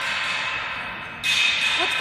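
Cotton-gloved hand rubbing along the painted steel radiator fins and side panel of an oil-filled distribution transformer: a steady hiss that turns louder about a second in.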